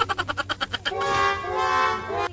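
Comedy sound effect added in editing: a fast rattling run of pulses, then a horn-like toot in two held notes.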